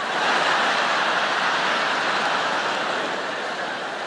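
Large theatre audience laughing and applauding after a punchline. It swells at the start, holds, and eases slowly near the end.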